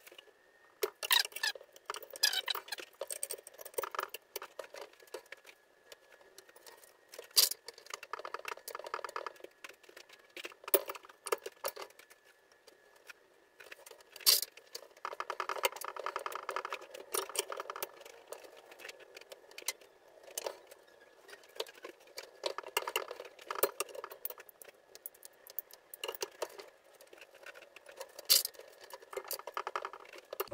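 Stringing a tennis racquet on a drop-weight stringing machine: Volkl Cyclone polyester string pulled and fed through the frame in repeated rustling, scraping runs, with scattered sharp clicks and knocks from the clamps and machine.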